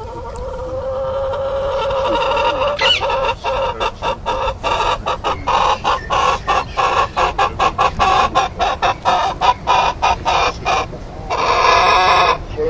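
Chicken calling: a long drawn-out rising note, then a fast run of short clucks, about four a second, ending in another long held note.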